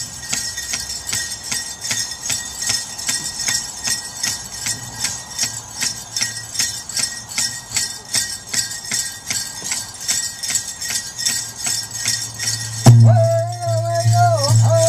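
Dancers' regalia bells jingling on a steady beat, about four a second, with a hand drum keeping time underneath. Near the end the drum strikes loudly and a high singing voice comes in.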